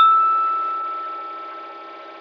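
A single struck chime, one clear bell-like tone that rings out and slowly fades over about two seconds, over a faint steady hum.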